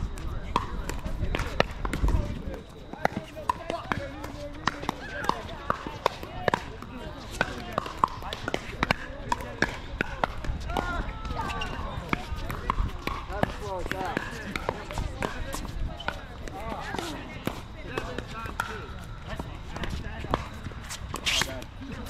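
Pickleball paddles hitting a plastic ball, with the ball bouncing on the hard court: frequent sharp pops, many of them overlapping from several courts at once, over the chatter of players' voices.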